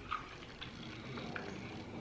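Quiet room with a few faint soft clicks and wet mouth sounds of someone chewing a small jelly sweet.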